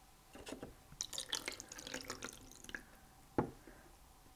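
Water poured from a mug into a small plastic toy bathtub: a faint trickle with light drips for a couple of seconds, then one sharp knock near the end.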